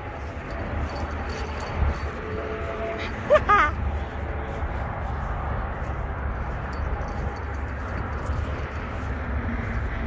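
A puppy gives one short whimper that rises and falls about three and a half seconds in, over a steady low rumble.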